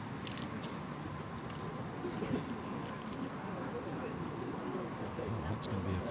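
Faint, distant voices murmuring over a steady outdoor background hiss, with a few light clicks just after the start.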